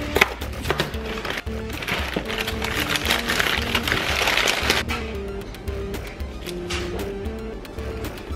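A cardboard cereal box being opened, with a few sharp snaps of the flap early, then its plastic liner bag crinkling loudly for about three seconds as it is pulled open. Background music with held notes plays throughout.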